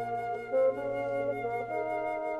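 Flute and bassoon with concert band playing a concertino, slow held notes over a sustained low note. The notes change a few times, with one note swelling louder about half a second in.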